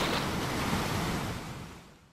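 Small ocean waves washing and splashing over shoreline rocks, a steady rushing hiss that fades out near the end.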